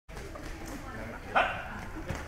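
A single short, loud vocal cry about one and a half seconds in, over a steady low room hubbub.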